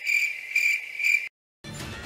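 Cricket-chirping sound effect: a high, steady chirring that swells about three times. It starts and cuts off abruptly about a second and a half in, a comic 'crickets' awkward-silence gag.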